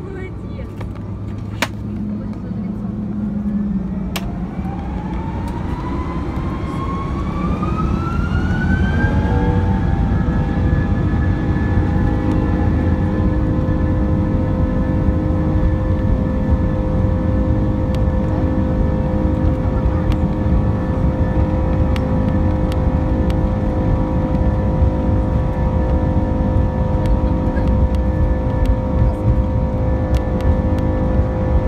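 Airbus A330-200's Pratt & Whitney PW4000 turbofans spooling up to takeoff thrust, heard from inside the cabin. A rising whine climbs for about six seconds and settles into a steady, many-toned drone over a strong rumble as the aircraft accelerates down the runway.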